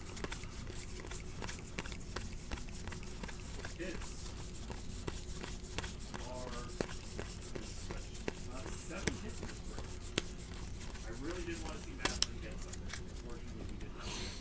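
A stack of trading cards being thumbed through by hand: card stock sliding and flicking card over card in quick, irregular soft clicks, over a faint steady hum.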